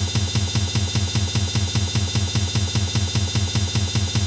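Music: a fast, even drum beat repeating over a steady low bass tone.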